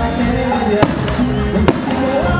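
Live band music played through a stage sound system, Latin in style, cut through by two sharp bangs a little under a second apart.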